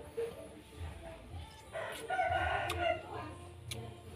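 A rooster crowing once, a single call of a little over a second about two seconds in.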